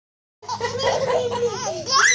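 Baby laughing in long, wavering squeals, starting about half a second in and rising in pitch near the end.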